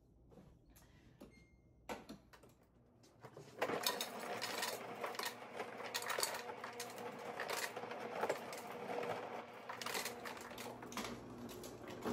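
A refrigerator's door ice dispenser running, dropping ice into a cup with a dense rattling clatter that starts a few seconds in and stops just before the end.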